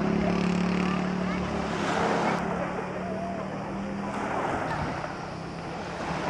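An engine running steadily, its low hum fading out about four seconds in, over a wash of waves, wind and distant voices.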